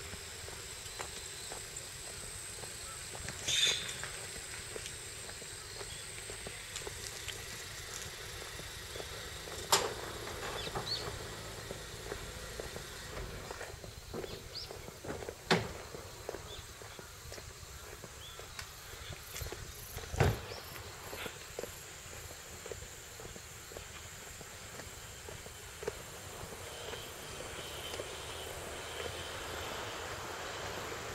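Quiet rural outdoor ambience with a steady faint high-pitched insect chirring, broken by four short sharp knocks spaced several seconds apart.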